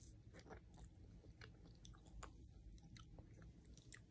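Faint chewing and biting of a soft ice cream mochi, with irregular wet mouth clicks scattered throughout.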